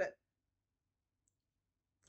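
A woman's voice ends a word, then near silence, broken only by one faint, tiny click about halfway through.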